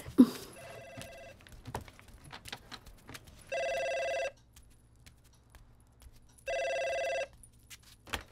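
Landline telephone ringing: three short electronic rings about three seconds apart, the first faint and the next two louder.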